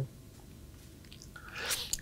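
A pause in a man's speech: quiet room tone, with a faint sound rising near the end just before he speaks again.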